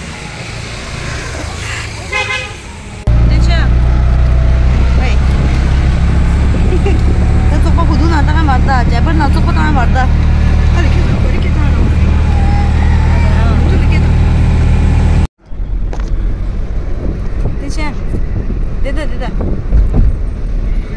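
Road noise inside a moving car: a loud, steady low rumble of engine and tyres that starts suddenly about three seconds in, cuts out briefly about three-quarters of the way through, then goes on a little lower.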